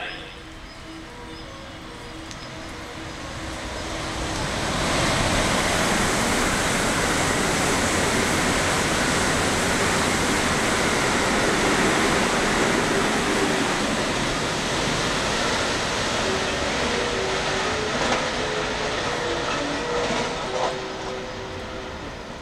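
JR West Special Rapid electric train (225-0 series coupled with 223-2000 series) running through the station at speed without stopping. A rush of wheel, rail and air noise builds over a few seconds, holds steady for about ten seconds, then fades as the train draws away.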